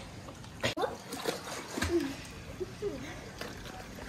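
Water splashing from a child's swimming strokes in a pool, with brief faint voices.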